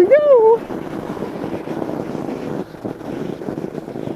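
Fat bike's wide knobby tyres rolling over crusted snow on lake ice: a steady, grainy noise, with some wind on the microphone.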